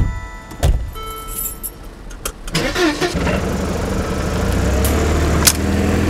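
Car engine sound effect: quiet at first with a faint click, then the engine is started about two and a half seconds in and runs steadily at idle.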